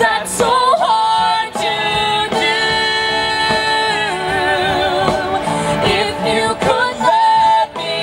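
A musical-theatre duet sung live into handheld microphones through an outdoor PA over backing music, with a woman singing. The vocal line includes long held notes with vibrato, the longest near the middle.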